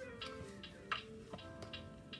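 A few sharp ticks and clicks from a stack of laminated chart cards on a metal binder ring being handled, over faint steady tones at several pitches.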